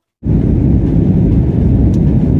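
Steady low rumble of an airliner in flight heard from inside the cabin: engine and airflow noise that starts suddenly just after the beginning and holds even.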